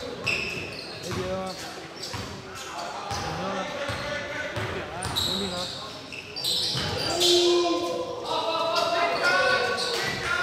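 A basketball being dribbled on a hardwood gym floor, with players' voices calling out, echoing in the large hall.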